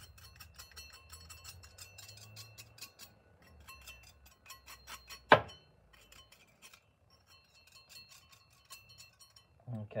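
A knife blade scraping and scratching at a freshly sand-cast metal piece held in pliers, a run of fine, rapid scratchy clicks, with one sharp metallic clink a little after five seconds in. The scratching is a check of the new casting's surface.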